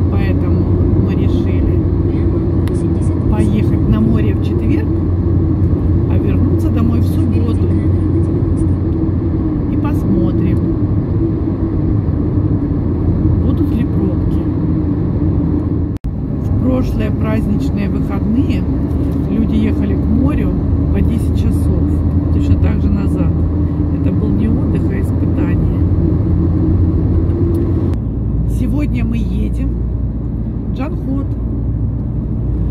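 Steady engine and tyre noise heard inside a car cruising at highway speed, broken by a brief silent cut about halfway through.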